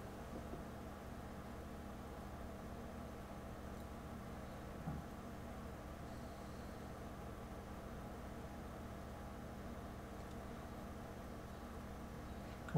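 Faint, steady room hum and hiss, with one soft tap about five seconds in.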